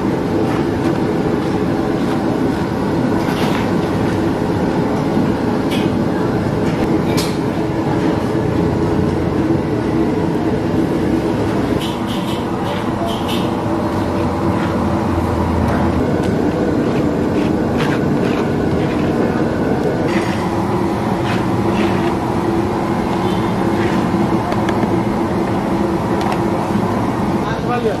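Busy street-food stall ambience: a steady din of background chatter and a constant traffic-like rumble. Scattered sharp clicks and scrapes come from a plastic plate scraping sambal out of a stone mortar into a plastic basin.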